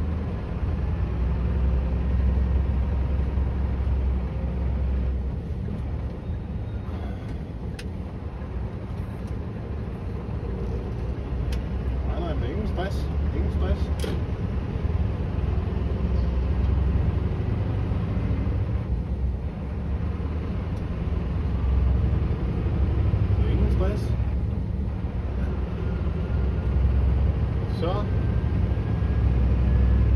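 Scania V8 diesel truck engine running as the truck drives, heard from inside the cab as a steady low drone that swells and eases. A few light clicks and short squeaks come from the cab along the way.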